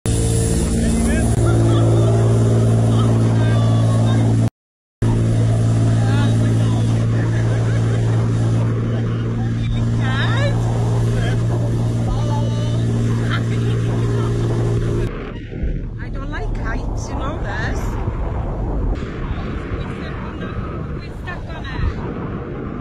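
Tow boat's engine running at a steady high drone, close by, for about fifteen seconds, with a brief half-second dropout near the start. It then stops, leaving rough, fluttering wind on the microphone as the parasail is aloft.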